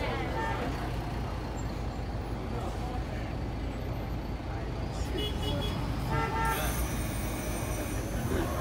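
Ikarus 435 articulated bus's diesel engine running steadily, heard from inside the bus, with brief higher-pitched tones about five and six seconds in.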